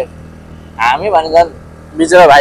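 Motor scooter engine running steadily at cruising speed, a low hum under a short spoken phrase about a second in.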